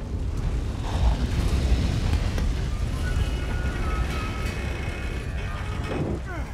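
Film soundtrack of a fire burning, heard as a continuous low rumble under a musical score. Thin sustained high tones come in about two seconds in and fade out near the end.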